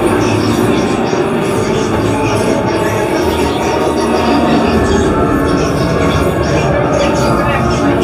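Loud, steady piped soundtrack of a haunted maze: a dense, unbroken mix with voices and music woven into it.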